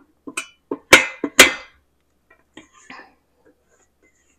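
Spatula scraping and tapping inside a stainless steel pot to get the last of the sauce out: a run of short scrapes and knocks, with two sharp clanks about a second in, then only faint small scrapes.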